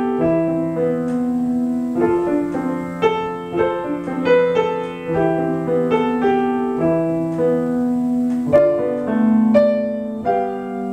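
Solo piano playing a Christmas carol arrangement at a moderate pace: a single-line melody moving over held low notes, with a few louder struck notes late on.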